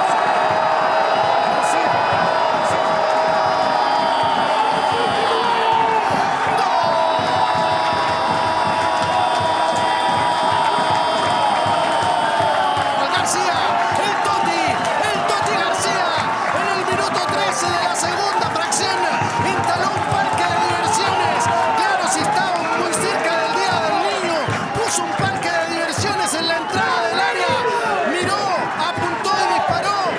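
A radio football commentator's long drawn-out goal cry held at one steady pitch, drawn out again after a breath, for about twelve seconds in all. It is followed by excited shouting over cheering fans with scattered knocks and bangs.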